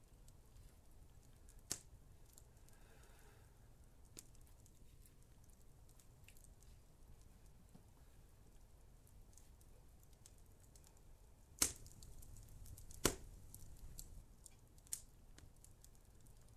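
Quiet room tone broken by a few scattered sharp clicks or snaps; the loudest two come near the end, about a second and a half apart.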